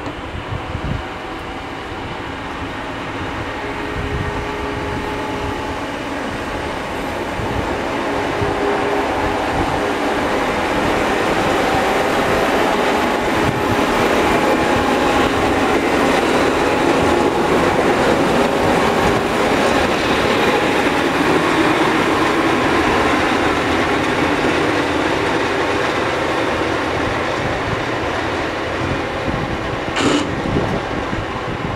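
Rail vehicle running on steel track, a steady rumble of wheels on rails that builds gradually over the first half and then eases slightly.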